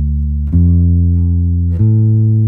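Electric bass guitar playing a D minor triad one note at a time, rising D, F, A. The D is ringing as it opens, the F comes in about half a second in and the A near the end, each note sustained until the next.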